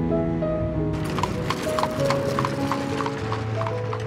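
Horse's hooves clip-clopping on the road as it pulls a kalesa (horse-drawn carriage), a quick even beat of about four to five steps a second starting about a second in. Background music plays alongside.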